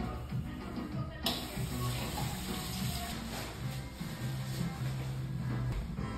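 Background music with a steady beat; about a second in, water from a sensor sink faucet starts running and keeps splashing under it.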